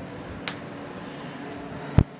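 A low steady hum with a faint click about half a second in and a short, sharp click at the very end, the loudest thing heard.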